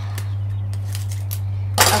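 Roll of sticky tape being picked up and handled: a few light clicks, then a short, loud tearing burst near the end as tape comes off the roll, over a steady low hum.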